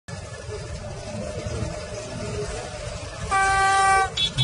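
A brown bear blowing a long straight trumpet-style horn: one steady, held blast that starts abruptly about three seconds in and sounds to the end, over a low rumble.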